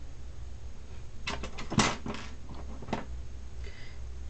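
Handling noise: a brief run of rustles and clicks, with one sharp click about two seconds in and a smaller one about a second later, over a steady low hum.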